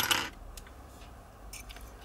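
Faint handling of small metal atomizer parts and a metal pick tool: light ticks over quiet room tone, after a brief rustle at the start.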